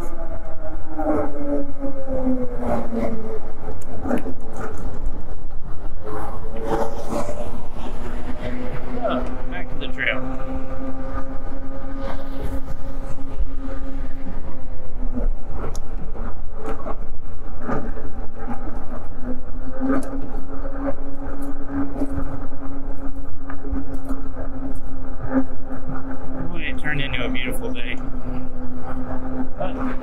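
Electric hub motor of an Eahora Juliet e-bike whining while riding, its pitch following road speed: it falls over the first three seconds as the bike slows, climbs again, then holds steady at cruising speed with a few brief dips. A steady low rumble of wind on the microphone runs underneath.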